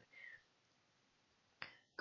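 Near silence, broken by a single short, sharp click near the end.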